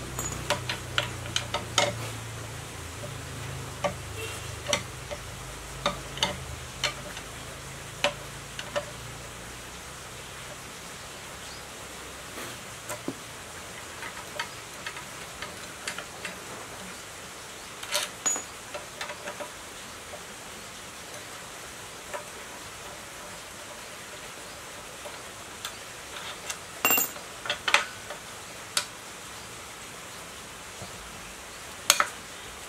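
Long-handled socket wrench working the bolts on the crankcase of an 1115 single-cylinder diesel engine: scattered metallic clicks and clinks of the tool on metal, coming in several irregular bunches, the loudest near the end.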